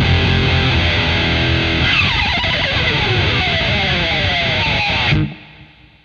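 Gibson Les Paul electric guitar played through a Walrus Audio Eras distortion pedal: thick, hard-clipped distorted chords, then a long slide falling in pitch over about three seconds, cut off sharply just after five seconds.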